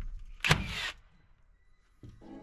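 Cordless framing nailer driving a nail into the top plate: one sharp crack about half a second in, followed by a brief hiss.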